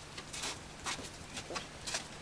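Footsteps on snow, about two steps a second.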